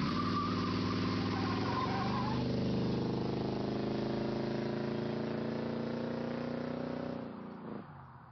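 Car engine running and accelerating away, its pitch rising slowly, then fading out shortly before the end.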